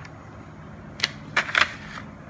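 A thin clear plastic blister tray gives three short, sharp clicks in quick succession, starting about halfway through, as a stack of trading cards is pushed out of it.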